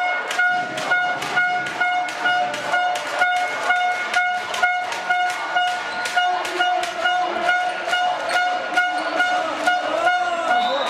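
A horn sounding a steady pitched note in rapid short blasts, with sharp claps or drum beats in time, about three a second.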